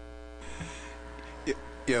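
Electrical mains hum from a meeting-room microphone and sound system. A steady low hum runs throughout, with a buzz of many even tones over it that cuts off about half a second in, leaving a faint hiss.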